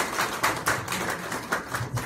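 A small group of people applauding, hand claps quick and overlapping.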